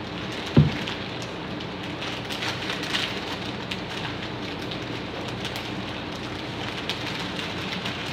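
Steady crackling hiss with scattered small clicks over a faint low hum, and one dull low thump about half a second in.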